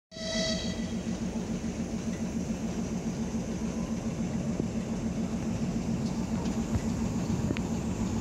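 TEP70 passenger diesel locomotive's 16-cylinder diesel engine running with a steady, evenly pulsing drone while the locomotive shunts. A short high tone is heard right at the start.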